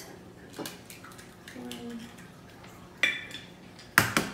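Eggs being cracked against the rim of a plastic mixing bowl: two sharp taps, one about three seconds in and one at the very end, with a small click earlier.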